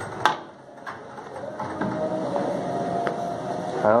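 A urinal being flushed: a sharp click of the flush handle, then water running through the flush valve, building from about a second and a half in, with a faint whistle.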